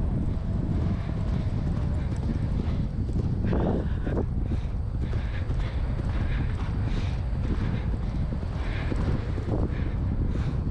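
A horse's hoofbeats on grass as it moves at speed, under heavy wind noise on the helmet-mounted microphone. A brief pitched sound comes about three and a half seconds in.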